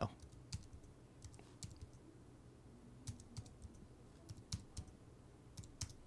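Faint computer keyboard keystrokes typing in numbers, a few quick clicks at a time with short pauses between.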